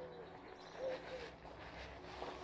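A bird calling faintly in the background: a few short, low notes, one at the start and two more about a second in.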